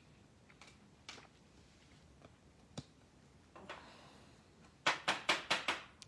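Trading cards and hard plastic card holders handled on a tabletop: faint scattered ticks and rustles, then a quick run of about five sharp plastic clicks near the end.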